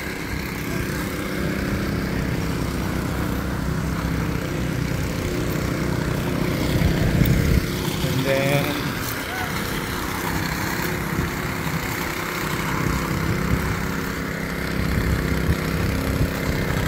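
Engine-driven power trowel running with a steady hum as it finishes a fresh concrete slab.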